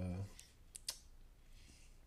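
A man's voice trails off, then in the pause two short, sharp clicks sound close together a little under a second in, faint against quiet room tone.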